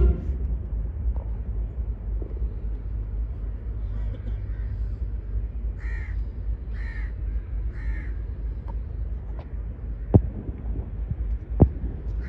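A crow cawing three times, about a second apart, over a steady low rumble. Two sharp knocks follow near the end.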